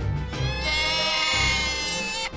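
Background music with a steady bass beat. About half a second in, a long, high-pitched, slightly wavering call comes in over it and holds for more than a second.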